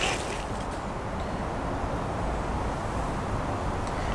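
Steady, fairly quiet outdoor background noise with no distinct sound event.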